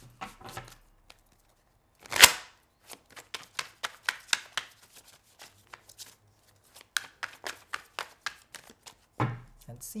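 A tarot deck being shuffled by hand: a quick, uneven run of soft card clicks and slaps, with one louder burst of noise about two seconds in.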